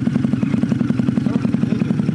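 Cruiser motorcycle with twin exhaust pipes idling after being started, a steady, rapid, even exhaust pulse.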